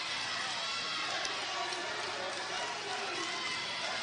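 Basketball arena crowd noise: many voices blending into a steady din.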